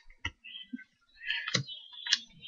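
Playing cards being laid down on a wooden table: two sharp clicks, one about a quarter second in and a louder one about a second and a half in.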